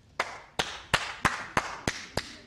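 One person clapping slowly and evenly, about three sharp claps a second: ironic applause.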